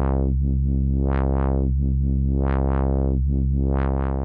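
Sustained low synthesizer tone whose filter cutoff is swept by the ChaQuO chaos modulator. The brightness swells and dulls in repeating pairs of peaks about every 1.3 seconds, with small resonant warbles riding on the slow sine-like sweep.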